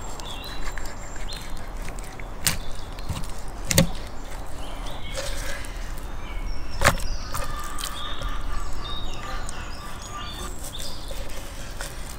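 Knife slicing raw beef heart on a wooden cutting board, the blade knocking sharply on the board three times. Birds chirp in the background.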